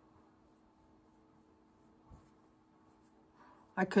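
Fingertips rubbing cream camouflage face paint onto the skin of the cheek: a faint, soft rubbing over a steady low hum.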